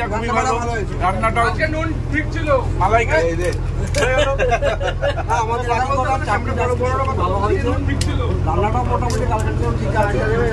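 Steady low drone of a river tourist boat's engine, running evenly under continuous conversation.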